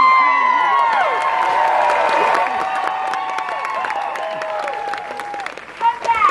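A large crowd cheering, with many voices whooping and shrieking at once over clapping. It is loudest right at the start and slowly dies down over about five seconds.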